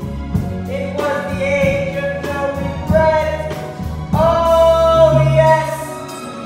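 A musical-theatre song sung live with accompaniment; the voice holds one long note from about four seconds in.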